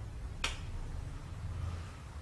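A single short, sharp click about half a second in, over a faint low steady hum.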